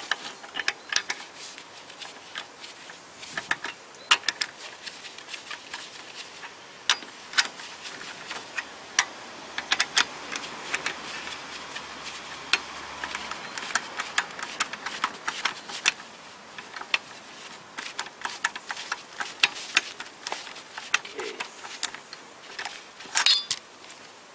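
Socket ratchet clicking in short irregular runs while a wheel lug nut is worked loose, with a louder clatter near the end.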